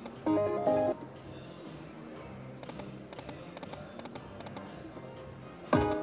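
Buffalo Link video slot machine sounding a short electronic win jingle, a loud cluster of chiming tones lasting about half a second, as the reels land a small win. A steady bed of faint electronic tones and clatter from the casino floor follows, and a loud sudden burst of machine sound comes just before the end.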